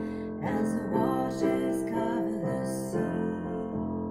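A woman singing a slow hymn over her own piano accompaniment, sustained chords under the sung melody.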